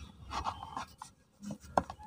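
Soft, dusty cement blocks being pressed and crumbled by hand in loose cement powder: gritty rustling and small cracks. There is one sharp click near the end.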